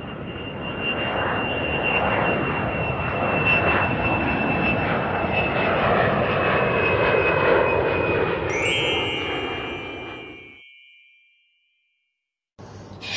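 Jet airliner engine sound effect: a rushing jet roar with a steady high whine that swells and then fades out about ten seconds in. A bright chime rings out over it near the end.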